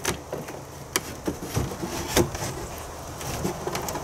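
A few sharp wooden knocks and light scrapes as a wooden hive box used as a swarm trap is pushed and shifted into place on its wooden stand.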